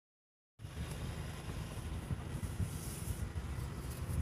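Car cabin noise while driving slowly: a steady low rumble of engine and tyres, heard from inside the car, starting about half a second in.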